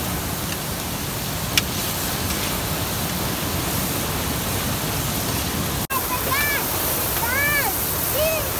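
Steady rushing of a fast mountain river, with a single sharp click about one and a half seconds in. Near six seconds the sound breaks off for an instant, and short high-pitched calls follow over the river noise.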